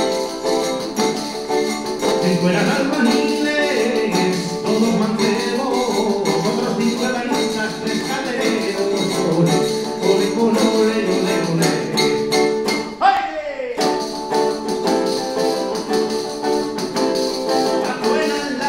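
Live acoustic folk music in seguidilla style: a small box-bodied stringed instrument strummed in a steady rhythm with shaken, tambourine-like percussion. A short downward-sliding sound cuts across the music about thirteen seconds in.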